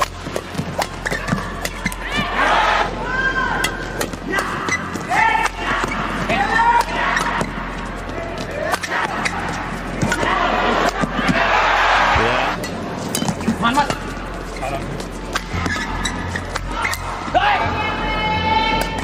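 Badminton rally in an indoor arena: rackets strike the shuttlecock in sharp repeated cracks, court shoes squeak in short chirps on the court mat, and the crowd cheers in swells, loudest about ten to twelve seconds in as a point ends.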